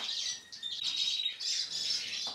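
Caged European greenfinches chirping and twittering in short high calls, with one thin steady high note held for about a second in the middle.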